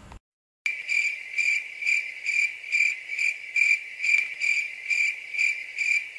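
Cricket chirping sound effect, starting after a brief moment of dead silence: a steady high chirp pulsing about three times a second. It is the comic 'crickets' gag marking an awkward silence after a punchline.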